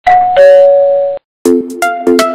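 A two-note ding-dong chime, high then lower, like a doorbell, ringing for about a second and cutting off sharply. After a brief gap, electronic music with a beat and repeated chords starts.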